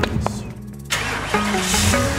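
A vehicle engine starts suddenly about a second in and keeps running, over background music.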